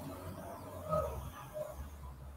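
Quiet room tone with a low, steady hum, picked up by the presenter's microphone, and a faint short sound about a second in.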